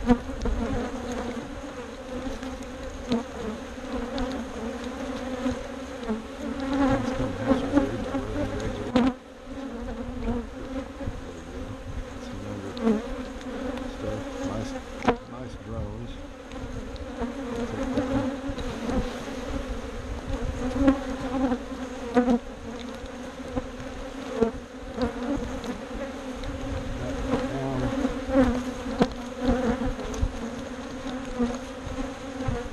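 Honeybees buzzing steadily around an open hive, a continuous low hum from the bees on the exposed frames. Occasional sharp knocks and clicks of hive equipment being handled.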